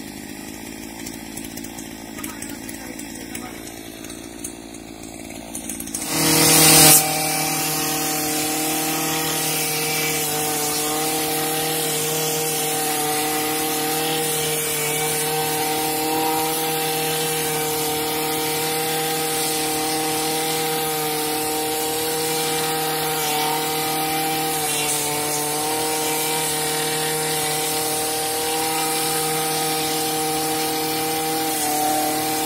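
Small petrol brush cutter engine, running low and quiet for the first few seconds, then a sudden loud rush of noise about six seconds in as it comes up to speed. After that it runs at a steady high speed with an even, unchanging pitch.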